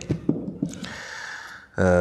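A man's audible intake of breath close to a microphone, followed near the end by a long drawn-out vocal sound held at one steady pitch.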